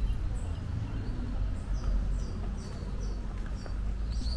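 A run of about five short, high chirps, roughly two or three a second, starting a little under two seconds in, from a small garden bird or insect. Under them runs a steady low rumble on the moving camera's microphone.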